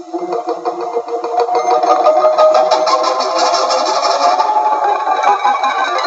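Live electric guitars playing a dense, sustained droning passage that swells up from quiet over the first two seconds, then holds loud and steady.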